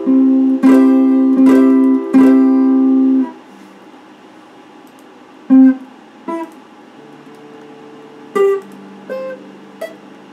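Electric guitar playing four ringing chords about two-thirds of a second apart, then damped suddenly about three seconds in. A few quieter single plucked notes follow.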